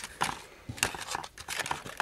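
A scatter of short, sharp clicks with light plastic crinkling as an all-steel frame-lock folding knife is handled over its clear plastic packaging.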